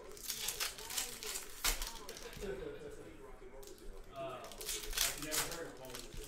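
Trading-card pack wrappers crinkling and tearing as packs are opened by hand, in crackly bursts about half a second in and again around five seconds, with a sharp snap a little before two seconds.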